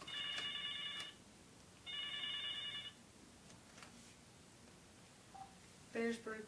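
Telephone ringing: two rings of about a second each, with a short pause between them.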